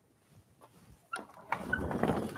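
Near silence, then a click about a second in, followed by a low rolling rumble as a wheeled chalkboard is pushed across a carpeted floor on its casters.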